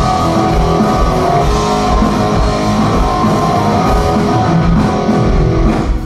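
Loud live rock band playing an instrumental passage: distorted-sounding electric guitar over drums with a steady low kick beat.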